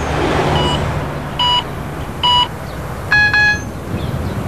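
Electronic beeps from a gas pump: four short, evenly spaced beeps about a second apart, then a lower, longer beep near the end, over a steady low background hum.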